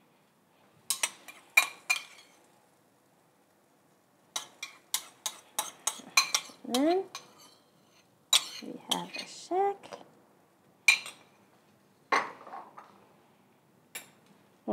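Metal kitchen utensils clinking and tapping against dishes and a frying pan: a few sharp clinks, then a quick run of them a few seconds in, and scattered taps later.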